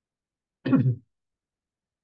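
A man clears his throat once, briefly, a little over half a second in.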